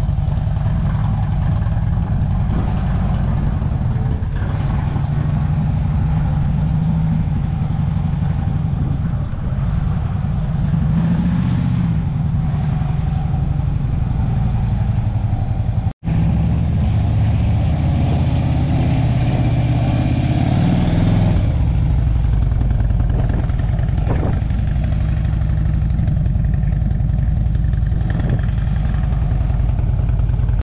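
Harley-Davidson Electra Glide's V-twin engine running at low speed as the heavy touring bike is ridden slowly, rising briefly in revs twice, around 11 and 21 seconds in. The sound cuts out for an instant about halfway through.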